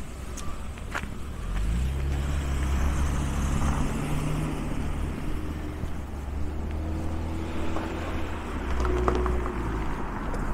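A car passing close by and driving on up the street. A low engine hum swells about two seconds in and holds for several seconds.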